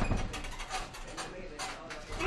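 Scattered light knocks and a low thud at the start, from fighters grappling against a chain-link cage fence, with faint voices underneath.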